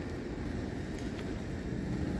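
Steady low outdoor rumble with no distinct event, at a moderate level.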